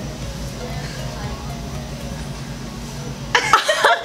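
A woman's loud, high-pitched excited shriek and laugh starts suddenly near the end, her reaction to a long hank of her hair having just been cut off. Before it there is only a steady low hum.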